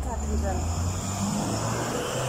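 A motor vehicle's engine passing on a city street: a low hum that rises gently in pitch as it goes by.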